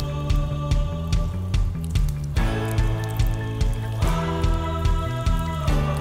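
Background music with a steady beat and sustained tones.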